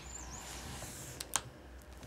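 Faint background with two sharp clicks a little over a second in, and a faint high chirp near the start.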